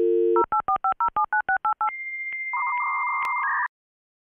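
Telephone dial tone, then a quick run of touch-tone digits being dialed, then a steady high answer tone and a short dial-up modem handshake screech that cuts off suddenly near the end.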